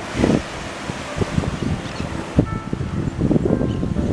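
Wind buffeting the camera microphone in uneven gusts, over small waves washing up onto the sand.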